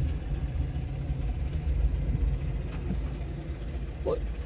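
Car engine and road noise heard from inside the moving car: a steady low rumble that eases slightly toward the end.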